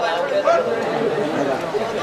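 Speech only: men's voices talking, with overlapping chatter.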